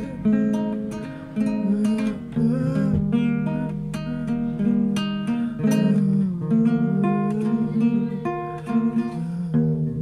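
Acoustic guitar played in a slow, steady rhythm of picked and strummed chords, the notes ringing on between strokes.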